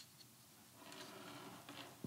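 Near silence: a light click at the start, then faint rustling from handling the camera rig for about a second.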